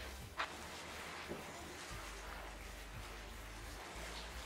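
Faint rustling and scraping of a plastic-gloved hand mixing dry flour and mashed purple sweet potato in a glass bowl, with one brief click about half a second in.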